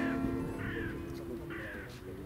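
Acoustic guitar chord, struck just before, ringing and fading away over about a second. A bird gives short calls three times over it.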